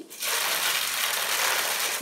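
A rapid, ratchet-like mechanical clicking rattle, starting sharply a moment in and holding steady for nearly two seconds.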